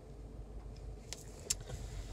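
Car engine idling, a low steady rumble heard inside the cabin, with two short clicks a little over a second in.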